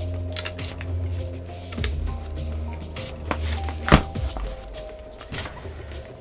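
Soft background music with a few sharp clicks and knocks as cable plugs are handled and pushed into the back of a soldering station; the loudest knock comes about four seconds in.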